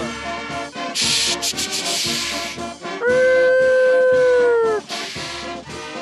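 Brass band music playing. About a second in comes a hissing crash lasting nearly two seconds, then a loud held note of about two seconds that dips slightly in pitch as it ends.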